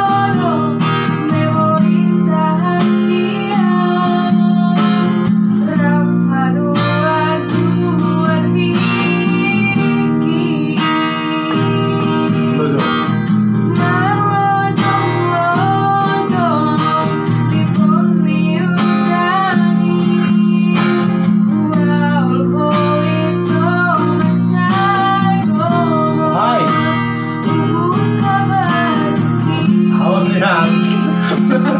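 Acoustic guitar strummed steadily as accompaniment to a woman singing a slow ballad melody.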